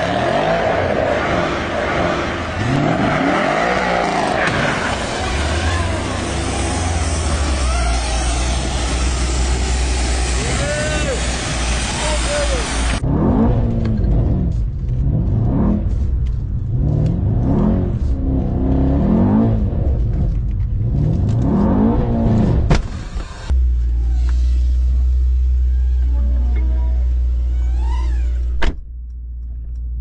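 Mercedes-AMG sedan engine accelerating hard on a race track. From about 13 to 23 s, heard from inside the cabin, it climbs through the gears: about six rising sweeps, each dropping at an upshift. Near the end it settles into a steady low rumble.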